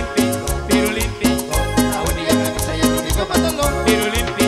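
Live cumbia band playing an instrumental passage: a bass line and congas over a steady dance beat, with sustained melody instruments above.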